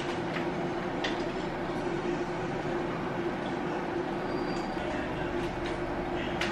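Steady fan-like hum and whoosh, with a couple of faint clicks in the first second.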